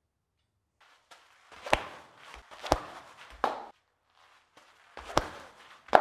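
Disc golf disc snapping off the fingertips on backhand throws: four sharp cracks about a second apart, each with a brief whoosh, with the thud of the plant foot under several of them.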